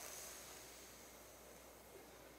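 Faint hissing breath drawn in through a curled, protruding tongue (Sitali pranayama), strongest at the start and fading away over about a second and a half.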